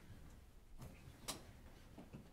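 Near silence: faint room tone with a couple of faint clicks, the clearest a little over a second in.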